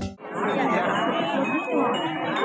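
Many people talking at once: crowd chatter that starts just after a brief gap, with a few faint steady ringing tones beneath it.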